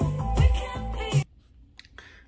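Music with a heavy bass line and vocals played at maximum volume from an Anker Soundcore Boom Plus portable Bluetooth speaker, cutting off suddenly about a second in. A few faint clicks follow in near silence.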